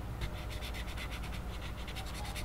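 An ink pen tip scratching across paper in quick, repeated short strokes, filling in a small shape solid black.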